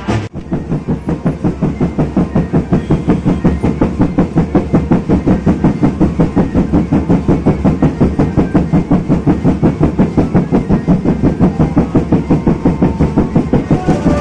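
Street-band drums beating a fast, even rhythm of about four to five strokes a second, with no melody over them.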